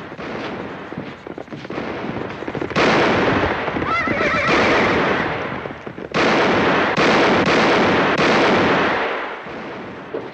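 A horse whinnies about four seconds in, over a loud, noisy commotion that swells twice, from a film riot scene soundtrack.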